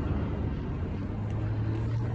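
A low vehicle engine hum over background noise, growing louder and rising slightly in pitch in the second half.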